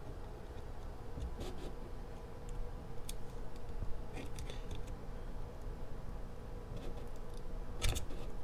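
Faint, scattered clicks and small taps from hands working a plastic epoxy syringe over a taped rocket body tube, with a steady low hum underneath. The sharpest click comes near the end.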